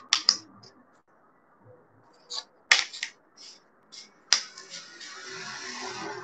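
Thin wooden cutout pieces being handled on a paper-covered table: a few sharp clicks and taps as they are set down and knocked together, then a rustling slide of wood over paper near the end.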